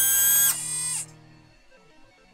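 Synthesized electronic robot power-up sound: a bright, buzzy tone held for about half a second, then softer until it stops about a second in.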